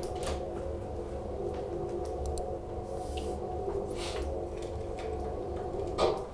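A steady electrical hum made of several tones, with a few faint clicks and taps from handling equipment at a desk. Right at the end there is a knock and the hum drops away suddenly.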